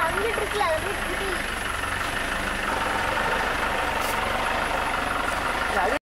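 A steady low rumble with a person's voice heard briefly in the first second and a half.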